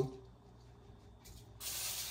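Aerosol cooking spray hissing from a can onto a foil-lined baking tray: a short puff about a second in, then a steady spray starting near the end. The can is running low.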